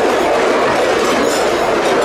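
Dense, continuous clanking and jangling of many metal cowbells hung in rows on a moving parade float, shaken together as it rolls along.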